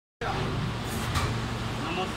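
Injection moulding machine running with a steady mechanical hum as the preform mould opens, with two short noises about a second in.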